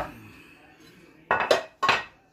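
Ceramic baking dish being gripped with a potholder and moved across the counter: a light knock as it is taken hold of, then two loud clattering knocks with a short ring about a second and a half in as it is set down.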